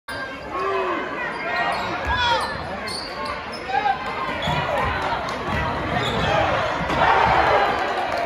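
Basketball being dribbled on a hardwood gym floor, with short high sneaker squeaks and the voices of a crowd in the stands; the crowd noise grows louder about seven seconds in.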